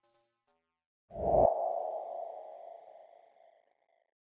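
A single electronic hit about a second in: a low thump under a ringing, ping-like tone that fades away over about two seconds.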